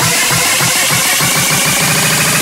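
Fast electronic hardcore (J-core) dance music played in a DJ set: dense, rapid bass stabs, with a sustained synth tone joining about halfway through.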